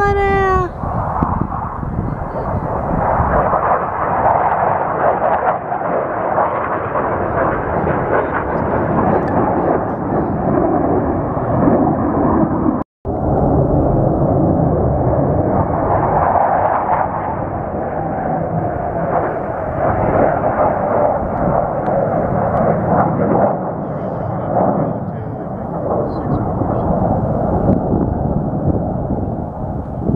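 Military jet aircraft flying low over the airfield in formation, a loud, steady jet roar that swells and eases as they pass, with a brief dropout about halfway.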